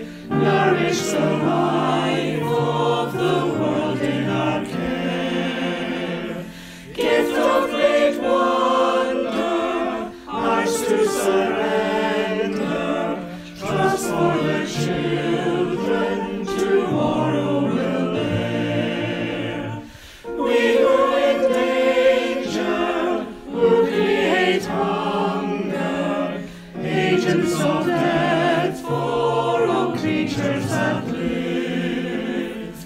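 Mixed choir of men's and women's voices singing a hymn with keyboard accompaniment, line by line with short breaks between the phrases.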